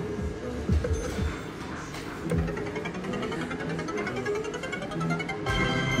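Electronic music and chiming sound effects from an arcade fruit machine, with a run of quick repeating chime notes through the middle and a fuller burst of tones near the end.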